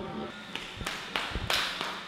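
About five quick bare footsteps on a tiled floor, sharp taps roughly three a second, starting about half a second in.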